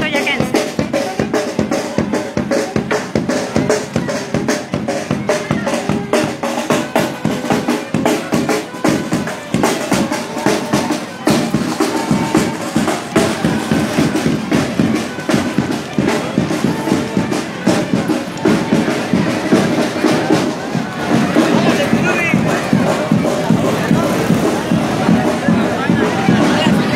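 Parade band drumming: snare and bass drums beating a fast, steady march rhythm, with music playing over it.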